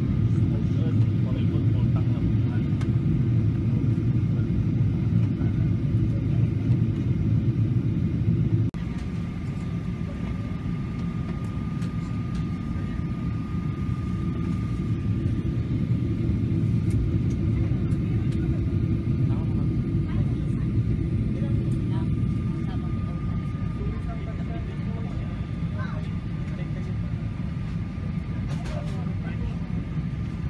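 Airliner cabin noise heard from a window seat: the steady low rumble of the jet engines and airflow. About nine seconds in, the rumble drops abruptly in level and a faint steady whine stays above it.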